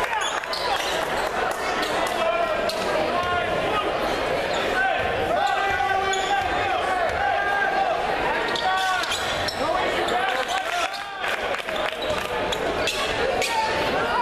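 Indoor basketball game in a gym: players' and spectators' voices echoing through the hall, with the ball bouncing on the hardwood floor.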